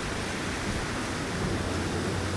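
Steady, even hiss with a low rumble underneath: outdoor wind noise on a handheld camera's microphone.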